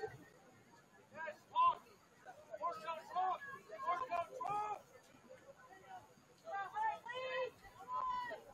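Voices shouting in short calls during a soccer match, several times with pauses between and too far off for words to be made out.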